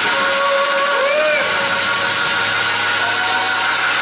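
Loud gospel praise music: held chords over a dense wash of cymbals and congregation noise, with a brief rising-and-falling tone about a second in.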